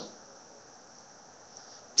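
Quiet room tone with a steady high-pitched hiss, the tail of a man's voice fading out at the very start.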